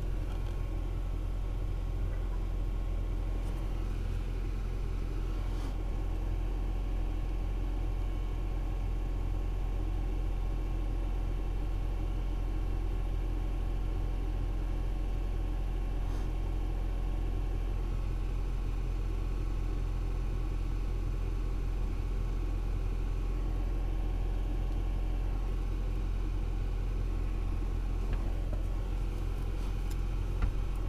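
Pickup truck's engine and road noise heard from inside the cab while driving: a steady low rumble.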